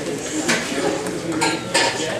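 Chatter of many people in a gym hall, with a few sharp slaps about half a second in and twice near the end, as students drill takedowns on the mats.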